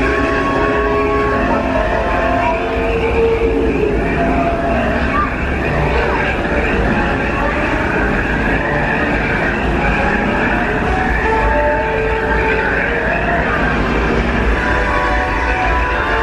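Disneyland Railroad passenger train running steadily along the track with a low rumble, under the dinosaur diorama's background music of held, shifting notes.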